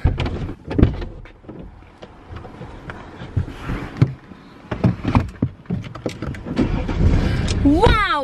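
Scattered thumps and knocks of someone moving about in a car's front seat, then the car's engine starting about six and a half seconds in and running with a low rumble. A loud gliding shout comes right at the end.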